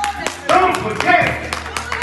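Congregation hand-clapping, a few sharp claps each second, under a man's raised voice over the church's microphone and speakers.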